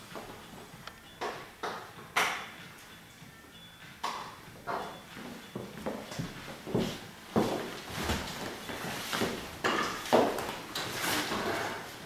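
Irregular light clicks and knocks from a hairdresser's comb, section clips and scissors working through wet hair.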